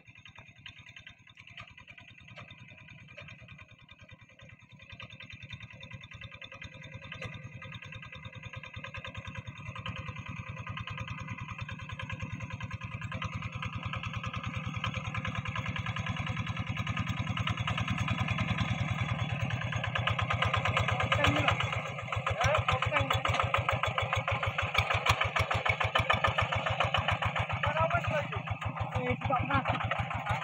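The single-cylinder diesel engine of a two-wheel hand tractor chugging steadily under load as it pulls a furrowing implement through wet rice stubble. It grows louder over the first twenty seconds as it comes closer, then stays loud, with a brief dip a little past twenty seconds.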